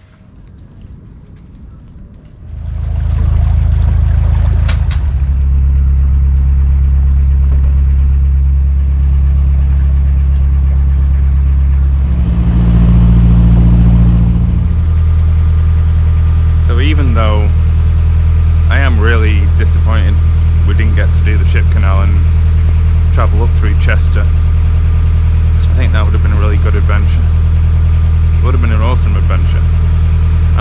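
Narrowboat engine running steadily while the boat cruises, a loud, deep, even drone. It comes in about two and a half seconds in. About halfway through, the note shifts higher and louder for a couple of seconds, then settles back.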